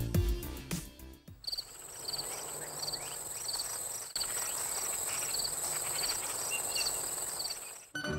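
After a short tail of music, crickets chirping, about two short chirps a second, over a steady high-pitched insect drone.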